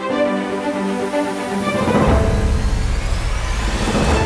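Background music: held chords for the first two seconds, a swelling whoosh into a louder, bass-heavy section about halfway through.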